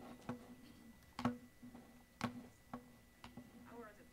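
A few faint sharp clicks and taps at uneven spacing, about six in all, from objects being handled on a lectern, over a steady low hum.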